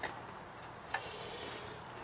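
A single small click about a second in, from a hand working the carburetor controls of a small portable generator, over a faint steady hum.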